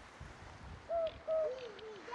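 A pigeon cooing in woodland: a short run of low coos beginning about a second in, the last two notes arching and dropping in pitch.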